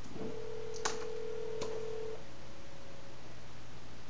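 Telephone ringback tone over a speakerphone: one steady tone lasting about two seconds, the sign that the dialled phone is ringing, with two sharp clicks during it.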